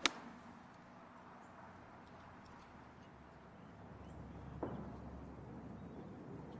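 A golfer's iron strikes the ball on a full approach shot, one sharp click right at the start, followed by faint outdoor ambience. About four and a half seconds in, a faint soft knock comes as the ball lands on the green.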